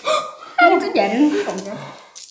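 People's voices: loud vocal sounds with rising and falling pitch, but no clear words.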